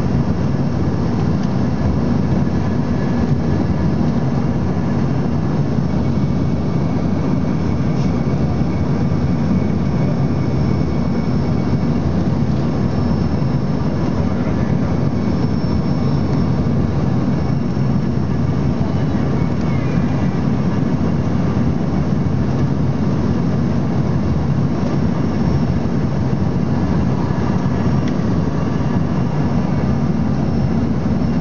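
Steady cabin noise inside an Embraer ERJ-145 regional jet on final approach: its rear-mounted Rolls-Royce AE3007 turbofans and the rushing air make a loud, even low rumble with a faint high whine.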